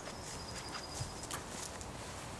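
Footsteps on dry grass: several soft, irregular footfalls of someone walking a few paces.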